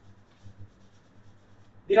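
Faint rubbing and scratching of a marker and hand against a whiteboard, with a small scrape about half a second in. A man's voice starts just at the end.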